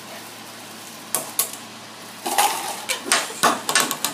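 Marbles clicking and clattering against each other and a wooden rail. Two single clicks come first, then a quick run of sharp knocks over the last second and a half.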